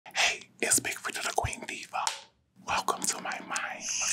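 A person whispering close into a studio microphone, with a short pause about halfway through. Near the end a steady high hiss comes in.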